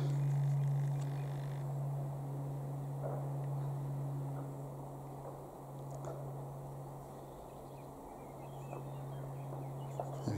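Distant light aircraft high overhead, heard as a steady low drone that is loudest near the start and dips about two-thirds through.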